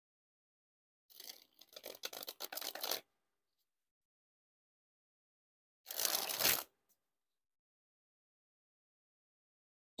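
A deck of Theory11 Red Monarchs playing cards dribbled from one hand into the other: a rapid flutter of cards falling for about two seconds, then again in a shorter, denser burst about six seconds in.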